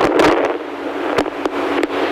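Airflow rushing over a paraglider pilot's in-flight microphone, a steady band-limited hiss with a few sharp clicks through it.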